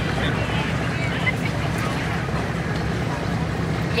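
Street ambience on an outdoor news microphone: a steady low rumble of vehicle engines with faint distant voices over it.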